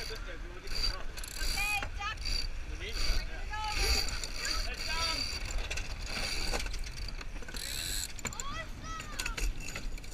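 Sailboat deck gear being worked: sheet winch ratcheting and lines squeaking through blocks as a sheet is hauled, with short rising-and-falling squeaks scattered through and the jib flapping. Wind buffets the microphone throughout.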